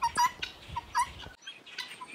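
Short, high animal calls repeated several times, each a brief note that hooks upward. The background noise cuts off abruptly a little over halfway through.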